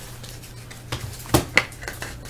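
A few light plastic clicks and scrapes as a trading card is slid into a clear rigid plastic card holder, one with a brief squeak, over a steady low electrical hum.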